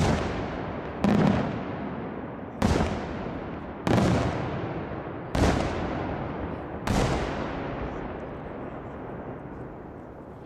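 Aerial firework shells bursting: six loud bangs about a second to a second and a half apart, each trailing a long rolling echo, fading away over the last few seconds.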